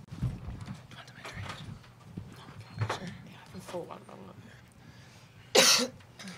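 Soft rustling and small knocks of people settling at a press-conference table, with faint murmured voices, then one short loud cough near the end.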